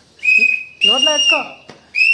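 A shrill, steady whistle tone in two long blasts, the second about twice as long as the first, with a third starting near the end. A voice speaks briefly over the second blast.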